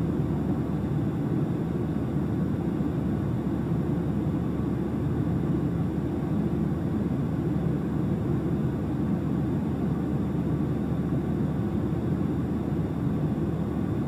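Cessna 172's piston engine idling steadily, heard as a constant low rumble inside the cabin.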